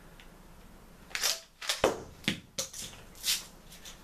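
Handling of an airsoft rifle with an underbarrel grenade launcher and its gear: about five sharp clicks and knocks of plastic and metal, starting about a second in, the loudest about two seconds in.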